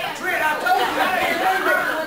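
Indistinct chatter of several voices talking at once, echoing in a large hall.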